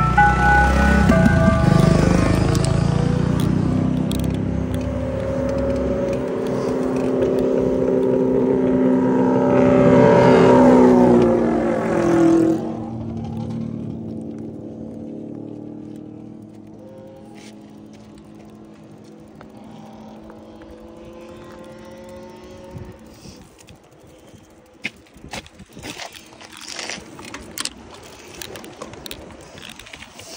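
Cars passing on a road close by, the loudest going by about eleven seconds in with its pitch dropping as it passes. After that it is quieter, with scattered light clicks.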